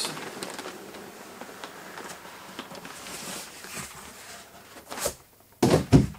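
A cardboard carton being slid up off a plastic-bagged speaker: a steady rustle of cardboard rubbing on plastic with small crinkles. It ends in a sharp knock about five seconds in and more knocks just before the end.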